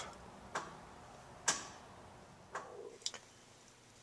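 Replacement EVAP vent solenoid on a 2006 GMC Sierra clicking as a scan tool commands it on and off: four faint, sharp clicks about a second apart, the last two closer together and the second the loudest. The clicking shows that the new solenoid responds to the commands.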